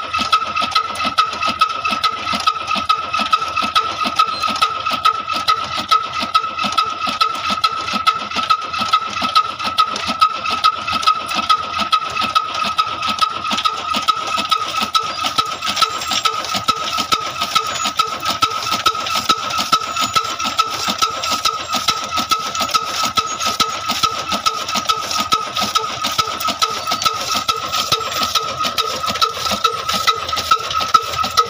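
Old slow-running flywheel diesel engine driving a belt-driven chaff cutter that chops green fodder, with a regular beat of knocks and a steady high whine.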